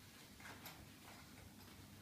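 Near silence, with a few faint small clicks from a fabric school backpack being handled.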